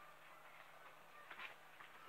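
Near silence: room tone, with a couple of faint soft clicks from trading cards being handled about a second and a half in.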